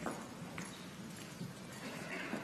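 Faint footsteps of shoes on a stage floor, a few separate light steps over quiet hall room tone.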